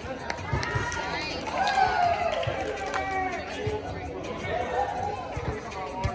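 Players' voices calling out and chattering over background music, with a few short sharp knocks.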